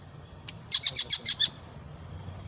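A captured kingfisher calling: one short high note, then a fast run of about seven sharp, high notes lasting under a second.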